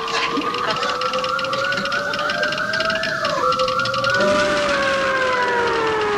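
Warbling electronic sci-fi sound effect for a UFO-tracking machine as it swings to point at someone. Siren-like wavering tones, about three wobbles a second, run over steady tones that rise slowly, dip suddenly about three and a half seconds in, then slide downward.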